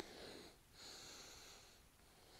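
Faint breathing of a man exerting himself in a prone hold: a short breath, then a longer one lasting about a second.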